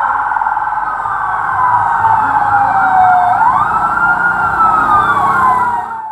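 Police vehicle sirens, loud: a fast warbling siren with a slower wailing tone over it. The wail falls, sweeps sharply up about three seconds in, then falls again.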